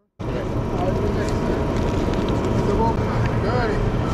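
Street noise that starts suddenly after a brief silence: a steady rush of traffic and wind on the microphone, with voices faint underneath.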